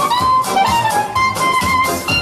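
Upbeat band music with brass, a sousaphone-type bass, a held melody line and a steady beat.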